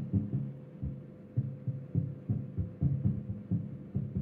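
Taps on an acoustic guitar's top over a newly fitted Shadow under-saddle pickup, amplified through a powered PA speaker as a string of soft low thumps, about three a second, with a faint steady hum under them. It is a lower-end type sound with no popping or clipping, which shows the new pickup passing a clean signal.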